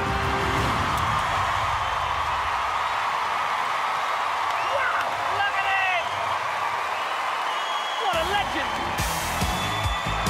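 Studio audience cheering and applauding loudly, with whoops and shrieks rising over the crowd noise; music comes back in near the end.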